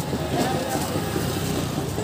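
Street noise: a steady low rumble of passing traffic, with people's voices in the background.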